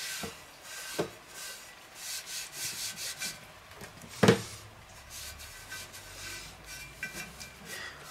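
A cloth rubbing seasoning paste onto a cast-iron Dutch oven lid in repeated scrubbing strokes, with one sharp knock about four seconds in.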